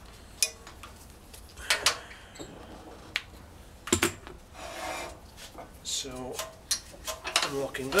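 Separate hard clicks and knocks, with short stretches of scraping, from metal wood-lathe fittings and a square Perspex block being handled at the lathe headstock while the block is mounted for turning.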